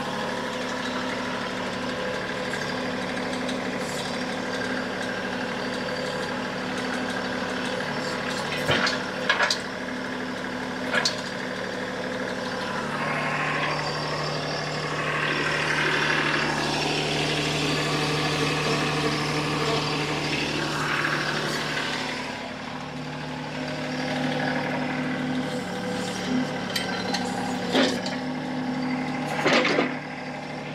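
TYM T264 compact tractor's diesel engine idling steadily, its note shifting and growing louder for several seconds in the middle as the backhoe is worked into place. A few sharp metal clanks, the heaviest near the end, as the backhoe frame meets the tractor's subframe cradle.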